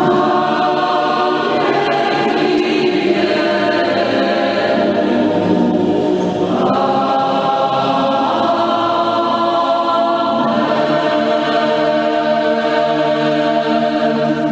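Background choral music: a choir singing slow, sustained chords that change every few seconds.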